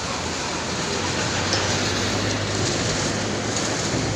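Diesel engine of a large coach bus running as the bus moves slowly past at close range: a steady low drone under a broad even hiss.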